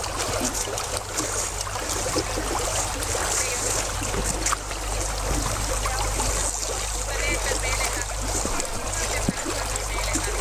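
Water sloshing and trickling at the edge of a hole in lake ice as a person moves in the icy water, under a steady low rumble and hiss, with faint voices.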